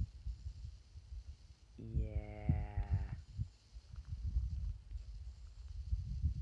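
A cow moos once, a steady call of just over a second, about two seconds in. Low wind rumble on the microphone runs underneath.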